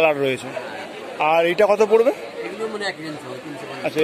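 Speech: people talking, with chatter behind.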